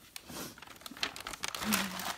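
Wrapping paper crinkling and tearing in quick, irregular rustles as a present is unwrapped.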